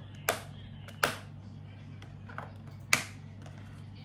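A white perforated folding desk organizer being handled and unfolded, its panels knocking together in three sharp clacks spread over a few seconds.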